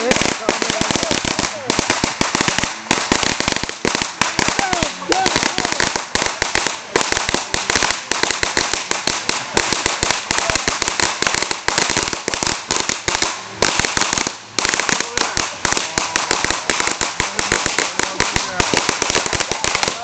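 A long strip of firecrackers going off in a rapid, continuous stream of bangs, with a brief lull about fourteen and a half seconds in.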